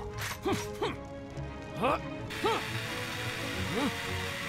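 Cartoon mechanical sound effects of a fire-truck robot readying its hose, with short rising-and-falling whirring tones, then from about halfway a steady hiss of the hose spraying onto the fire.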